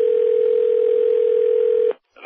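A telephone line tone: one steady, unchanging tone held for about two seconds, then cut off sharply as the call connects.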